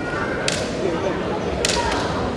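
Bamboo shinai clacking together as two kendo fencers probe at each other's blades: a sharp clack about half a second in and a quick double clack near the end, over the hall's background murmur.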